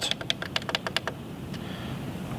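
Controls on a Yamaha LS9-16 digital mixing console clicking in quick succession as the menu is scrolled: about a dozen small clicks in the first second, then they stop.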